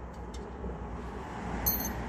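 A brief, high metallic ring near the end, as the steel washer comes off the tie rod end's ball-joint bolt, over a steady low background rumble.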